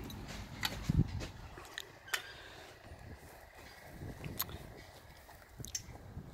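A few scattered light clicks and knocks from aluminium annexe poles being handled and fitted into the canvas, over a low rumble of wind on the microphone.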